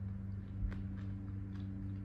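A steady low hum with a few faint, short clicks, about two-thirds of a second and a second in: the small mouth sounds of someone tasting a spoonful of milk pudding.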